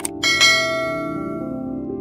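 A sharp click, then a bright bell ding about half a second in that rings on and fades over the next second: the notification-bell sound effect of a subscribe-button animation. Soft, sustained ambient music continues underneath.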